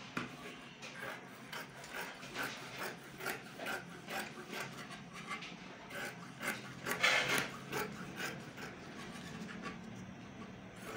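Dressmaker's scissors cutting through printed fabric laid on a wooden table: a steady run of snips, about two or three a second, a little louder around seven seconds in.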